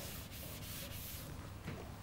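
Felt blackboard eraser rubbing across a chalkboard in a few quick strokes that die away after a little over a second.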